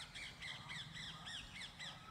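A bird calling in a fast, faint series of short arched notes, about four a second, stopping near the end.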